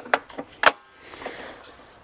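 Three sharp plastic-and-metal clicks from a table saw's rip fence being locked and handled, the last the loudest, followed by a soft scraping as the aluminium fence slides along its rail.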